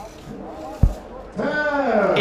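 A recurve arrow striking the target boss: a single short, low thud a little under a second in.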